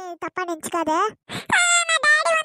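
A high-pitched cartoon character voice speaking in quick phrases, with a held, rising-and-falling note near the end.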